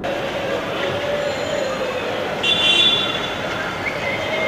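Steady outdoor background noise with a held low hum. A short high tone sounds about two and a half seconds in.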